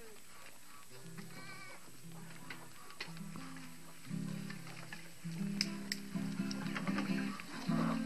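A guitar played slowly and haltingly, single low notes held one after another, growing louder in the second half. A short animal call sounds about a second and a half in, and a few sharp clicks come near the middle.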